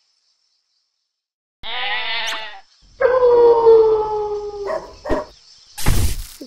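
Cartoon sound effect of a wolf howling: a short wavering cry, then a long howl sliding slowly down in pitch. A few knocks and a short burst of noise follow near the end.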